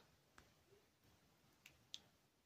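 Near silence: room tone with three faint clicks, one early and two close together near the end.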